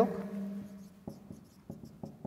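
Marker pen writing on a whiteboard: a few short, quiet strokes.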